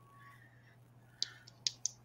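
Faint steady electrical hum, then from a little past halfway a quick run of sharp, light clicks from a marker being picked up and handled.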